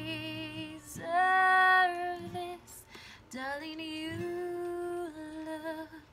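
A woman singing slow, long-held notes with vibrato, over a sparse acoustic guitar accompaniment.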